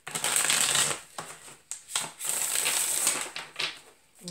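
A deck of tarot cards being shuffled by hand: two bursts of shuffling about a second long each, one near the start and one past the middle, with short flicks and taps between.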